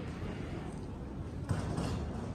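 Outdoor background noise: a low, uneven rumble with a faint haze above it, and a soft knock about one and a half seconds in.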